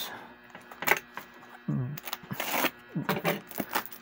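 Utility knife cutting through the packing tape and cardboard of a parcel, with scraping, a tearing stretch midway and a quick run of clicks and crackles near the end as the wrapping is pulled apart.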